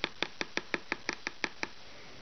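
A quick run of about ten light, evenly spaced taps, some six a second, that stop near the end: a knife knocking against a plastic mixing bowl.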